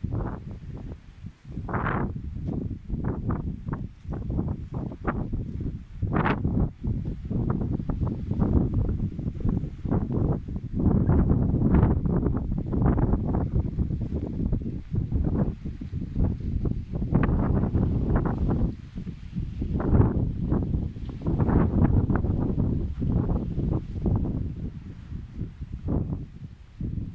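Strong wind buffeting the phone's microphone in uneven gusts: a low rumbling noise that swells and drops.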